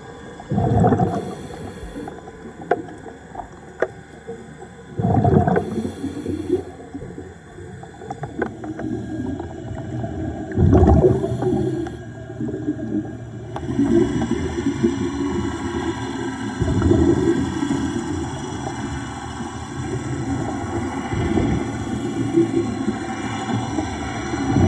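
Scuba regulator heard underwater: exhaled bubbles gurgle out in loud bursts about every five seconds. From about halfway through, a steady low underwater rumble sets in and continues.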